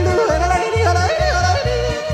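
Yodeling: a singing voice flips quickly up and down between low and high notes over a pop backing track with a steady bass beat.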